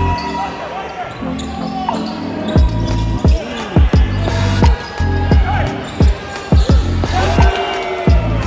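Basketball bouncing repeatedly on a hardwood gym floor, a sharp bounce about every half second from about two and a half seconds in, with short high sneaker squeaks. Music and voices run underneath.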